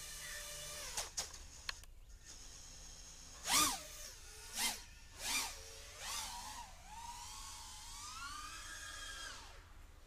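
Racing quadcopter's four brushless motors and DAL four-blade props whining in flight. About three and a half seconds in come three quick throttle punches, each a loud swell whose pitch sweeps up and back down. Then the whine climbs slowly to a steady higher pitch and drops away near the end.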